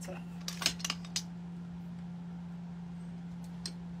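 A few short, sharp clicks and taps from craft tools and artificial floral stems being handled on a work table, clustered in the first second and a half with one more near the end, over a steady low hum.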